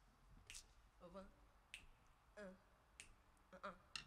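Faint finger snaps, four of them a little over a second apart, setting a slow tempo for the band to come in on, with soft vocal sounds between the snaps.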